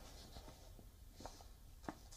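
Near silence: faint background hiss with two soft ticks, the second near the end.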